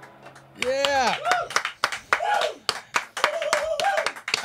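A small group of people clapping and whooping "woo!": two loud whoops about half a second in, then scattered claps and more shouts.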